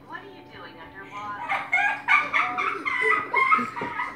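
A child's high-pitched, wordless voice calling and squealing, getting louder from about a second and a half in.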